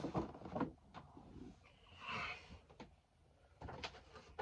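Boxed Funko Pop figures being handled and set back on a shelf: a few light knocks and taps of cardboard boxes against the shelf, with a short scraping rustle about halfway through.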